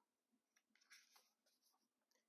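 Near silence, with a faint rustle of paper guidebook pages being handled about a second in.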